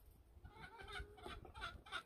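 Chickens clucking faintly, a string of short calls.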